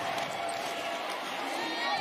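Steady crowd noise from a football stadium crowd during a play, with a faint steady tone running through it.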